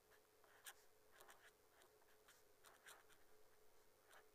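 Felt-tip marker writing by hand on paper: a faint series of about a dozen short strokes as a word is written out.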